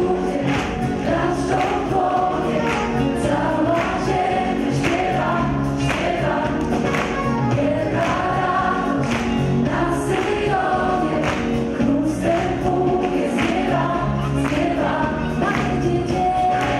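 Live gospel music: a female soloist sings over a choir and a band with electric bass, to a steady beat.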